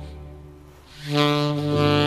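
Alto saxophone playing a slow melody: a held note fades away over the first second, then a new note comes in loud just after a second and is held.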